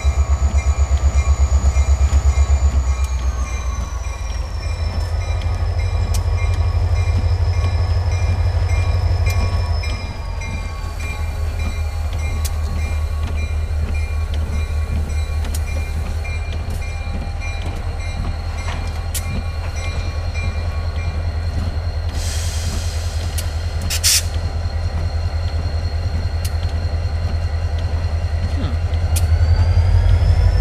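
A diesel freight locomotive and its train run past at close range, with a steady low engine rumble. A high whine steps down in pitch twice early on. A short hiss comes a little after twenty seconds in and ends with a sharp click.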